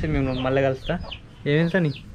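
A few short clucking calls of a domestic fowl, mixed with a man's speaking voice.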